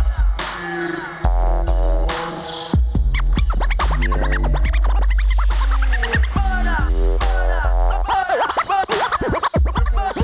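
Turntable scratching, a vinyl record pushed back and forth by hand in quick pitch-sweeping strokes, over a hip hop/electronic beat with heavy bass. The bass cuts out for a moment about a second in and again for over a second near the end while the scratches go on.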